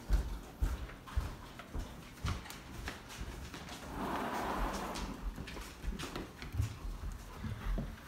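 Footsteps thudding irregularly on a hard floor as people walk, mixed with bumps from a handheld camera; a brief rush of noise comes about halfway through.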